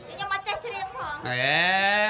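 A performer's voice: a few quick spoken syllables, then a drawn-out vocal cry of about a second that slides upward in pitch and holds, a comic exclamation in a live stage comedy.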